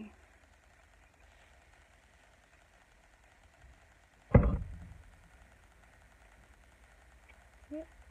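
One loud clunk about four seconds in as a resin ball-jointed doll is handled and its arm bent. Otherwise the handling is very quiet.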